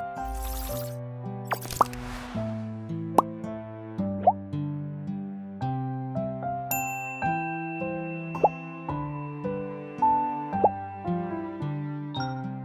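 Outro background music, a melody of held notes, with a swoosh at the start and several short blip sound effects, some rising in pitch, scattered through it.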